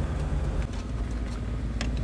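Steady low rumble of a slowly moving car, its engine and tyres heard from inside the cabin, with a couple of faint clicks near the end.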